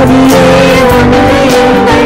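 Live band music: a singer holding a long, slightly wavering note over bass guitar, drums and hand percussion.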